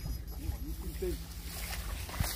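Low rumble of wind on the microphone under a faint steady hum, with a brief wavering voice, a short murmur rising and falling in pitch, about half a second in.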